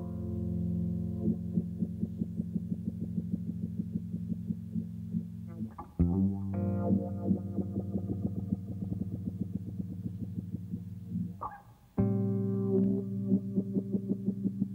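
Electric bass played through an effects processor: a fast run of repeated plucked notes over a held, effected tone. The sound changes abruptly about six seconds in and again near the end.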